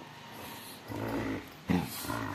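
Dogs growling in a tug-of-war play fight over a ball: a low growl about halfway through, then a short, louder burst near the end.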